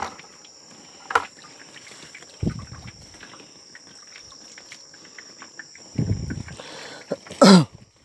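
Steady high chirring of crickets, over scattered clicks and rustles from live vannamei shrimp and white plastic harvest crates being handled, with a couple of dull knocks. Near the end comes a brief loud sound that sweeps down in pitch.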